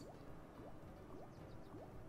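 Faint online slot game sound effects as the reels spin: a run of short, rising blips, about five in two seconds.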